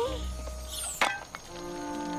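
Soft cartoon background music with held notes, broken about a second in by a single sharp click.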